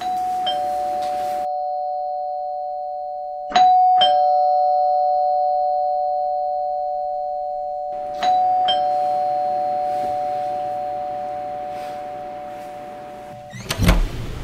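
Two-tone doorbell chime, a higher ding then a lower dong, rung three times about four seconds apart. Each chime rings on and slowly fades, and the last is cut off suddenly shortly before the end.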